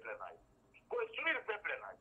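Speech only: a man talking in two short phrases, with thin, telephone-like sound.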